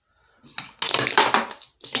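Small makeup items being knocked over, clattering and rattling against each other and the surface for about a second and a half.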